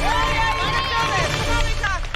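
A small group of supporters shouting encouragement, one drawn-out high call, with hand clapping over background music.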